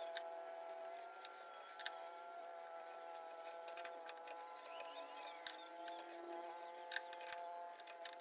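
Faint, scattered metallic clicks and light knocks from a lathe's four-jaw chuck being turned by hand and its jaws adjusted while a workpiece is dialled in with a test indicator, over a steady, even workshop hum.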